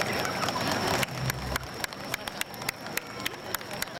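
Dance music stops abruptly about a second in. Scattered hand clapping from the audience follows, a few claps a second, with faint crowd voices.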